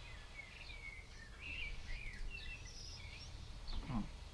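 Faint bird chirps, a loose run of short calls gliding up and down, over a low steady background rumble.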